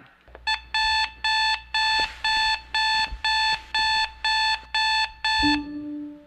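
Smartphone alarm beeping, short pitched beeps about two a second. A low piano note comes in near the end.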